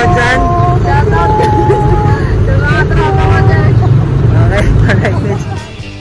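Several voices calling out drawn-out goodbyes over a loud, steady low rumble. Both cut off sharply about five and a half seconds in.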